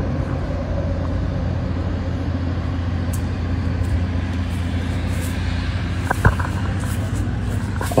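Steady low electric hum with a noisy rush, typical of the blower fans that keep inflatable yard decorations inflated; a single sharp click a little past six seconds in.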